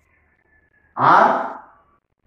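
A man's voice lets out a single voiced sigh about a second in, loud and breathy, fading out within a second.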